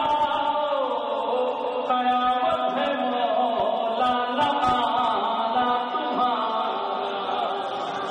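A man chanting Urdu devotional poetry (manqabat) in a melodic, sung style of recitation. He holds long notes that glide up and down in pitch, without pause.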